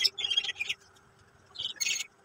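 Short high-pitched chirps come in two bunches, one near the start and another near the end, over a faint steady hum.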